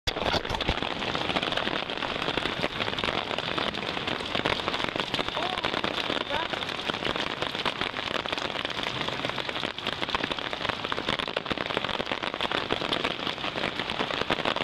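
Steady rain falling, countless small drop hits merging into an even, crackly hiss.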